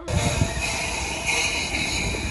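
Ruislip Lido Railway miniature train running past close by: the locomotive and carriages make a steady rumble and rattle on the track.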